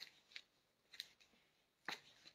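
Faint, sharp clicks, about four in two seconds, over near silence.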